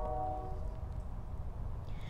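A steady low outdoor rumble, with a held musical tone of several pitches that fades out about half a second in.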